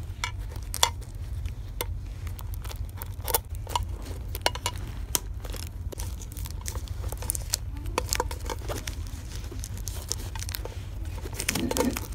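Fingernails tapping and scratching on a shrink-wrapped metal Pokémon card mini tin: irregular sharp clicks with the plastic wrap crinkling, over a steady low hum.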